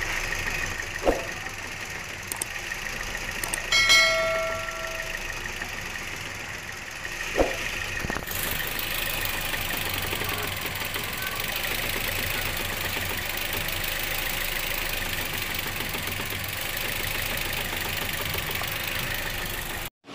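Car engine idling with the hood open while the steering wheel is turned, and a few sharp knocks from the front strut top mount, about one, four and seven seconds in. The engine is the louder of the two. The clunking comes from a seized strut mount bearing. From about eight seconds in, a steady hiss grows louder.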